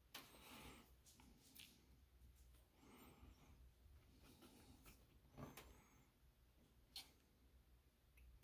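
Near silence with a few faint, sharp clicks from metal tweezers twisting surface-mount electrolytic capacitors off a circuit board; the loudest click comes about two-thirds of the way through.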